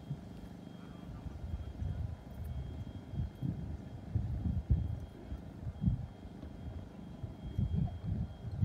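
Wind buffeting the microphone: an uneven low rumble that swells and fades every second or so.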